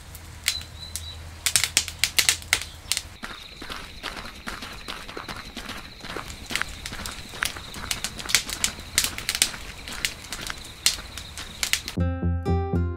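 Wood fire crackling, with irregular sharp pops that come in clusters. A faint steady high tone runs under it.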